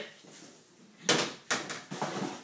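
Plastic wheelie-bin lid flung open, with two loud bangs and a clatter about a second in, half a second apart.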